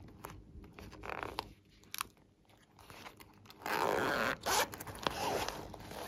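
The zipper of a small glittery pouch being pulled open in one long run a little past halfway through, with handling rustles and light taps before and after.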